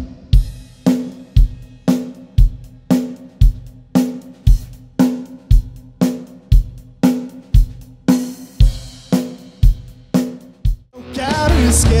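Acoustic drum kit struck in a slow, even beat of about two strokes a second, each a deep thump with a ringing drum tone. About a second before the end, full-band rock music with singing takes over.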